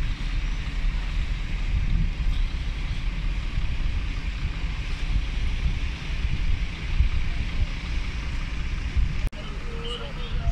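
Wind buffeting the microphone: a low, irregular rumble over a steady background hiss. The sound drops out briefly about nine seconds in.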